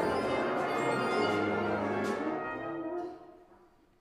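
High school wind ensemble playing full, sustained chords with the brass prominent, as a warm-up before its performance. The sound ends about three seconds in and dies away in the hall's reverberation.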